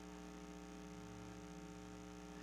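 Faint, steady electrical mains hum, a low buzz with several steady tones, in a pause between speech.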